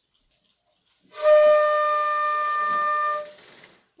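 A silver concert flute playing a single held note, the one the player calls Mi, for about two seconds starting about a second in. The note is steady and breathy and fairly high-pitched.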